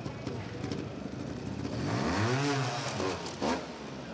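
Trials motorcycle engine blipped once about two seconds in, its pitch rising and falling back, over a steady background hubbub; a sharp click follows shortly after.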